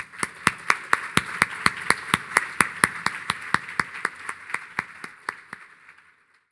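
Audience applauding, with one set of sharp claps close by standing out at about four a second; the applause fades away near the end.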